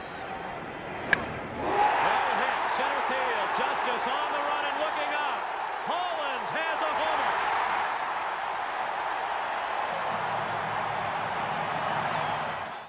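A single sharp crack of a bat meeting the ball about a second in, then a stadium crowd cheering loudly with shouts.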